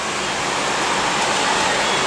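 Steady rushing road noise of a car driving through a rock-walled road tunnel, heard from inside the cabin.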